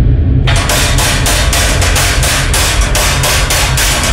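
A wooden drumstick striking stacked cymbals in an even run of short, clipped hits, about four a second, starting about half a second in. A low, steady musical bass drone lies underneath.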